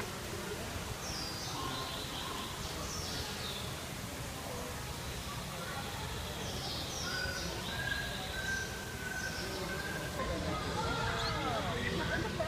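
Small birds chirping: short, high, falling chirps come every second or two, with a few longer whistled notes in the middle. Under them runs a steady low background noise with a murmur of voices.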